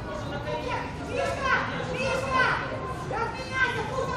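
Young teenage rugby players shouting and calling to each other on the pitch: several high-pitched shouts, about one a second, with no clear words.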